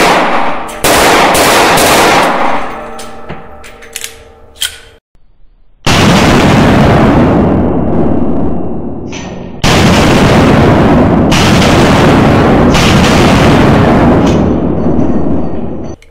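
Desert Eagle .357 Magnum pistol fired in an indoor range: a few very loud shots spaced several seconds apart, each followed by a long fading echo, with small metallic clicks in one of the gaps. The gaps come from the pistol being hard to return to battery between shots.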